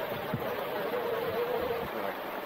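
Axial SCX6 Honcho RC crawler's electric motor and geartrain whining steadily as it drives through a creek, the pitch dipping a little partway through, over the steady rush of shallow stream water.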